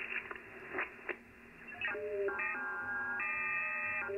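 Icom IC-705 transceiver's speaker playing received audio while the dial is tuned: faint band hiss with a few clicks, then, about two seconds in, several FT8 digital-mode signals at once, steady tones at different pitches that step up and down.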